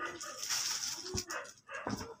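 Cloth rustling as a printed dress fabric is lifted, shaken out and swept across other fabrics, with two low thumps near the end as the cloth brushes past the microphone.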